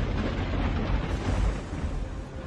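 Movie sound effect: a deep rumbling roar with a rushing hiss over it, starting suddenly and loudly as the Necronomicon is taken up.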